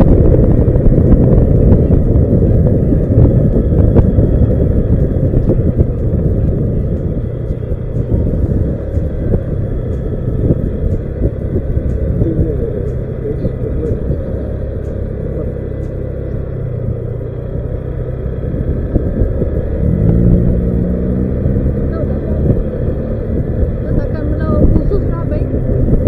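Wind buffeting an action camera's microphone on a moving Honda Vario scooter, over the scooter's single-cylinder engine. It eases off about two-thirds of the way through, then picks up again as the engine revs rise.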